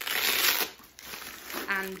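Plastic bubble wrap around a boxed glass crinkling as it is handled and unwrapped, loudest in the first half second, then fainter rustling.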